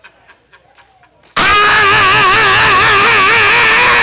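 A man's loud, long held vocal cry into a handheld microphone, wavering in pitch with vibrato and distorted through the sound system; it starts suddenly about a second and a half in and slides down in pitch as it ends.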